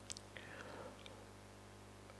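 Very quiet room tone with a low steady hum, broken by a few faint mouth clicks and a soft breath at a close microphone in the first second.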